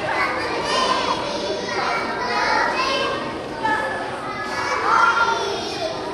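A group of preschool children singing together, many small voices at once.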